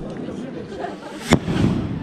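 A firework bursting in the sky with one sharp bang just over a second in, followed by a rolling rumble.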